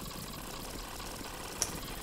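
Steady background hiss from the recording microphone, with a single short click about one and a half seconds in.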